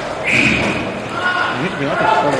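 Players' voices calling out across a large echoing rink hall, with a short loud shout near the start, over the clatter of roller hockey play with sticks and puck.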